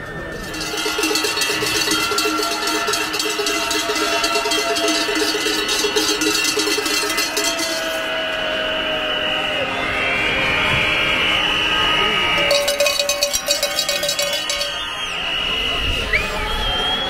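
Many cowbells being rung rapidly and continuously by a protesting crowd, stopping about halfway through and starting again for a couple of seconds near the end, over steady high tones and crowd noise.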